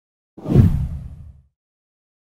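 A single deep whoosh transition effect that swells up quickly and dies away over about a second.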